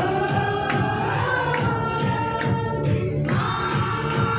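A group of voices singing a Christian devotional song in unison, holding long notes over a quick, steady beat.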